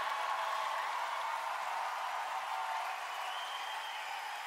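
Large theatre audience applauding and laughing, a steady wash of clapping.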